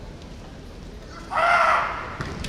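A kendo competitor's kiai: one loud, high-pitched, drawn-out shout about a second and a half in, lasting about half a second, over the steady low noise of a large hall.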